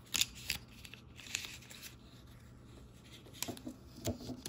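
Thin plastic film crinkling and crackling as it is peeled and pulled around a hard plastic earbud charging case. Sharp crackles come in short clusters near the start and again about a second and a half in, with a quieter stretch before more crackling near the end.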